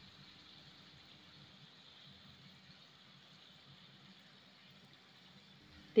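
Near silence: a faint steady hiss with a low hum underneath, room tone.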